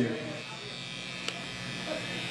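Steady electrical buzz from an idling guitar or bass amplifier rig, with no instrument being played, and one short click a little past halfway.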